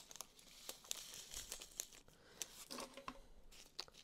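Faint crinkling of a small plastic zip-top baggie being handled and opened, with scattered light ticks of tiny square diamond-painting drills on a plastic drill tray.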